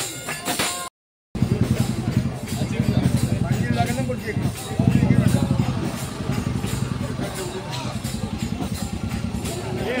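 Hand tambourine jingling with singing, cut off about a second in; then a steady, loud, low engine-like rumble with a fine, even pulse, with voices and light regular ticking over it.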